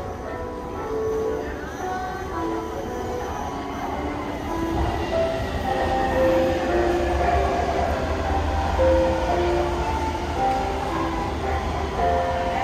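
Taipei MRT Bannan line train pulling into the underground platform. A low rumble builds from about midway, with a faint whine falling in pitch as it slows, over short melodic music notes.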